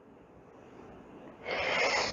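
Faint room tone, then about one and a half seconds in a woman's short, sharp breath in, caught close on a clip-on microphone.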